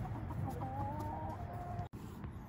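Flock of backyard hens clucking, with one long, steady call held for about a second.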